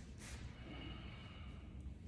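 A man's short, sharp breath out through the nose during pushing-hands exertion, followed by a faint thin squeak lasting about a second, over a low steady room hum.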